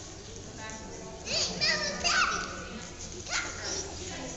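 Young children's high-pitched shouts and squeals, loudest from about a second in to just past the middle, over background chatter.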